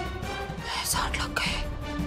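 TV drama background music with steady held tones, and a few short hissing, whisper-like sounds near the middle.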